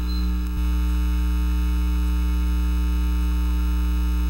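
Steady electrical mains hum with a buzz of many overtones on the recording's audio track, and a slight click about half a second in.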